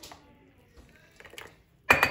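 A thin stream of hot water from a metal kettle running into a coffee mug and tailing off, then a few faint clicks of crockery. A sudden loud noise breaks in just before the end.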